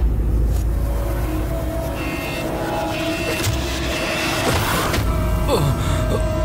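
Dramatic background music score with a deep low rumble and held tones, and a falling swoop near the end.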